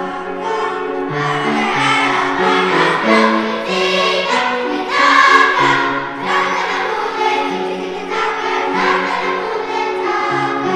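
A children's choir singing a song, with held notes changing in a moving melody.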